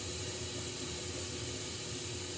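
Glassworking bench torch burning with a steady hiss as it heats a borosilicate glass tube.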